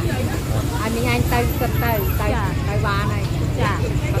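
Voices talking close by over a steady low rumble of traffic and motorbike engines in a busy street market.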